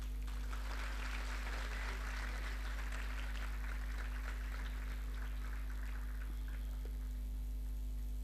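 Audience applauding: a dense patter of clapping that starts suddenly, is fullest in the first two or three seconds and dies away near the end, over a steady low electrical hum.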